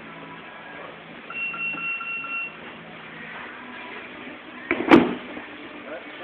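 Grapplers thrown down onto a padded mat: a single heavy thud about five seconds in, the loudest sound here. Earlier, a steady high beep-like tone lasts about a second.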